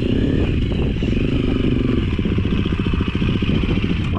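Trail motorcycle engines running steadily, one bike riding up the lane and drawing closer.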